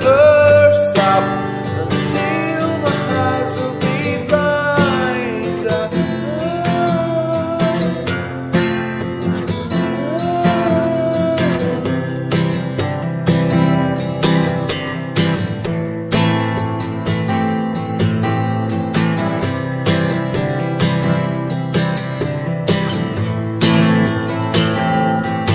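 Acoustic guitar music, with a melody line that slides up and down in pitch during the first half.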